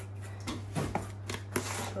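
Cardboard boxes being handled: a handful of short knocks and scuffs as a small cardboard box is lifted out of a larger shipping box and set down on a wooden table.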